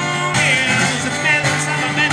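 A man singing into a microphone while strumming a steel-string acoustic guitar in a solo acoustic blues-rock song.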